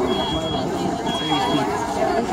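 A smoke alarm sounding two high, thin half-second beeps about a second apart, part of its three-beeps-then-pause alarm pattern: smoke from the burning room has set it off. Crowd voices chatter throughout and are louder than the beeps.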